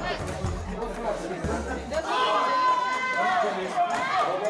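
Overlapping voices chattering over background music, whose bass notes drop out about halfway through. After that one voice holds a long, drawn-out call that falls in pitch at the end.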